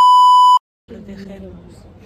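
An edited-in censor bleep: a loud, steady single-pitched beep lasting about half a second that cuts off sharply into a moment of dead silence. A woman's talk then resumes.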